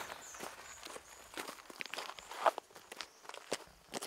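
Footsteps on a dry dirt and gravel track, an uneven series of short crunching steps as people walk.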